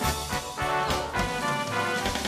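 Roland Atelier AT-80SL electronic organ played live, sustained chords over a steady drum beat.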